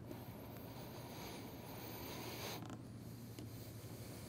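Quiet room tone: a steady low hum, with a faint hiss for the first two and a half seconds.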